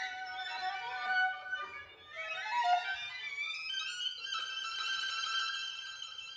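String quartet recording: violins play high held notes, with several upward-sliding glissandi about two to three seconds in, then settle into a long held high note.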